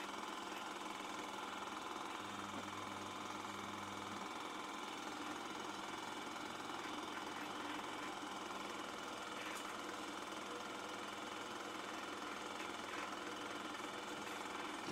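Faint, steady whirring of a film projector with a low hum, the old-movie effect laid under a countdown leader.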